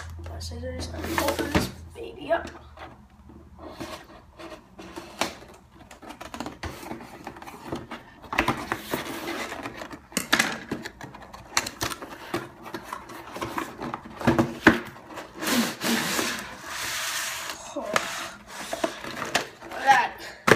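Cardboard toy box being cut and opened by hand: scissors snipping through the tape, cardboard scraping and sliding, and scattered knocks and taps as the box and its inner tray are handled. There are two longer scraping stretches, about nine seconds in and again around sixteen seconds.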